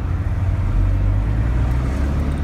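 Engine and road noise of a vehicle heard from inside its cab while it creeps through traffic: a steady low rumble that gets a little stronger under a second in.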